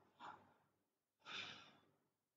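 Near silence in a pause of speech, with a faint intake of breath by the speaker about a second and a half in.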